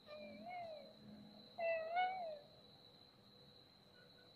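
An animal calling twice: two short calls that rise and then fall in pitch, the second, about a second and a half in, louder. A steady high-pitched whine runs beneath.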